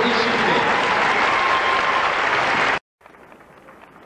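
Audience applauding, a dense steady clatter of many hands. It cuts off abruptly about three quarters of the way through, giving way to a much quieter background with faint light taps.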